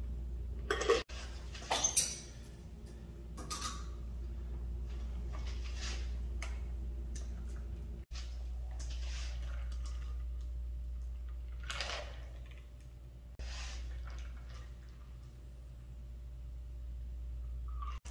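Metal cocktail shaker tin and strainers clinking against each other and the glassware while cocktails are double-strained into stemmed glasses: a few sharp clinks, loudest near the start, over a steady low hum.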